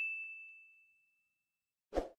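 A single bright notification-bell ding, the sound effect of a clicked subscribe-button bell icon, ringing on one clear tone and fading away over about a second and a half. A short dull thump comes near the end.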